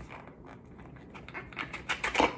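Small candle jars being handled: a few light clicks and taps, coming more often in the second half.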